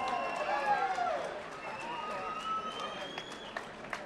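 Indistinct voices of people chattering around a boxing ring, with no one speaking into the microphone, and a light patter of faint high clicks.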